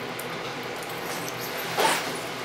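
Quiet room tone with faint handling of a small metal threaded retaining nut in the fingers, and one short noisy burst near the end.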